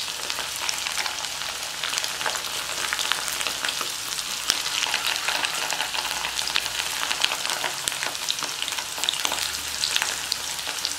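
Batter-coated mushroom pieces deep-frying in hot oil: a steady sizzle with many small crackling pops.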